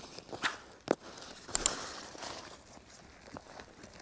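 Osprey Exos 48 backpack being handled: a few sharp clicks in the first two seconds and a stretch of nylon fabric rustling, then fainter handling noise.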